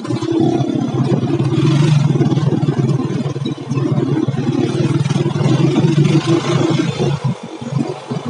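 Small motorcycle engine of a Philippine tricycle running as it rides along, a steady low drone that wavers in pitch and dips briefly near the end.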